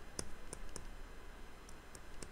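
Faint, irregular light clicks of a stylus tip tapping and dragging on a tablet screen while handwriting, about five in all.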